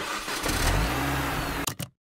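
Car engine revving, its pitch rising, with two sharp snaps just before it cuts off near the end.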